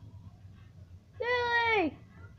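One high-pitched, drawn-out vocal call of under a second from the same voice that was speaking, starting a little past the middle and dropping in pitch at its end, over a low steady background hum.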